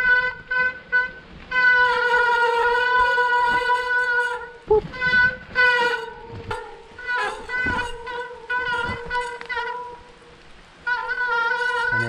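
Mountain bike disc brakes howling in the wet on a steep descent: a steady, horn-like tone that comes and goes as the rider drags and releases the brakes, with knocks from the tyres over roots and rock.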